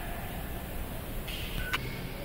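Steady low room noise, broken near the end by one sharp click with a brief electronic beep.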